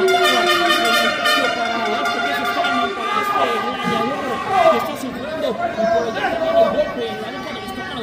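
Arena crowd of spectators shouting and chattering, many voices overlapping, some calls held out long.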